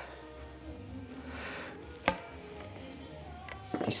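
Faint background music, with one sharp snip about two seconds in as hand snips bite through a wire-reinforced rubber radiator hose, and a couple of lighter ticks near the end.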